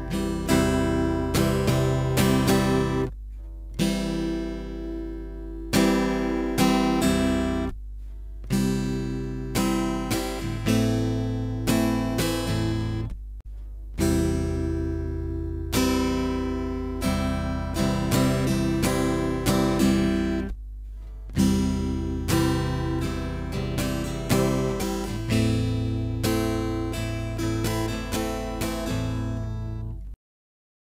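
Steel-string acoustic guitar strummed by hand in a down-down-up, up-down-up-down, down-up pattern. The chords ring and fade between strokes, and the strings are stopped dead four times for a beat at chord changes.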